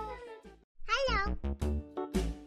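Background music: one track fades out about half a second in, a short wavering high-pitched voice-like sound effect follows near the middle, and a new upbeat track with a regular beat starts about a second and a half in.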